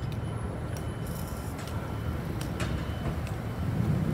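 Steady low rumble of city traffic, with a few faint ticks.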